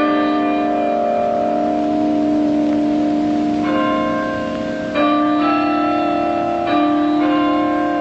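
Bells ringing a slow tune, a new note struck every second or so and each one ringing on over the next.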